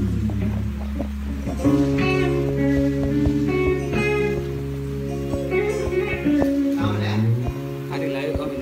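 Live band rehearsing: electric guitars playing chords over sustained bass notes, with drum hits.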